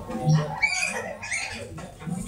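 Plastic syringes working a cardboard excavator's syringe-hydraulic arm: the rubber plungers squeak in their barrels as they are pushed and pulled. The squeaks are short and high, several of them in the middle.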